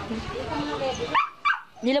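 Voices talking, with a short, high, rising yelp a little after a second in.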